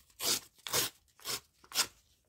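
A large book page being torn against a steel ruler's edge in four short rips, about two a second, pulling off a strip along the ruler.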